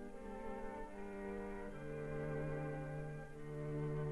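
String quartet of two violins, viola and cello playing a classical passage in held bowed notes, with a low held note coming in a little under halfway through.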